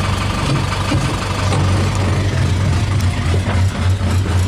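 An engine idling steadily, a continuous low hum.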